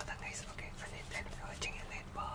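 A man whispering close to the microphone, with breathy, hissing consonants.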